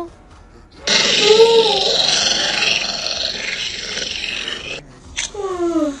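Growling sound effect of a beast, a loud rough growl with a wavering pitch lasting about four seconds, starting about a second in. A short falling vocal sound follows near the end.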